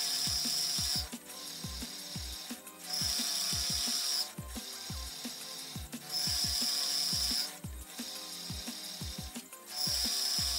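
Vertical milling machine's end mill cutting a steel workpiece, a high hiss that swells for about a second roughly every three seconds. It sits under background music with a steady beat and bass line.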